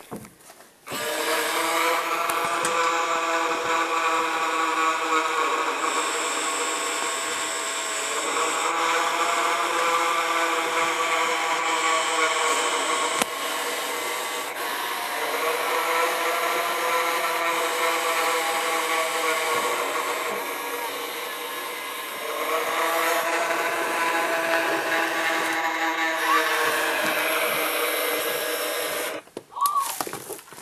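Gemmy animated floating-ghost Halloween prop's small electric motor running with a steady whine. The whine swells and fades in four long cycles about seven seconds apart, starting about a second in and cutting off near the end.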